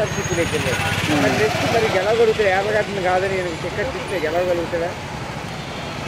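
A man talking in Telugu over steady road-traffic noise, with a vehicle engine running close by that rumbles low under his voice during the first few seconds.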